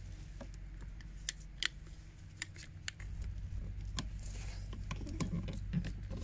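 Scattered light clicks and taps as a new diesel fuel filter and its locking ring are handled and fitted onto the filter head, over a faint steady low hum.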